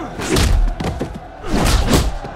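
Two heavy sound-effect impact hits with a deep boom and a falling sweep, one just after the start and one near the end.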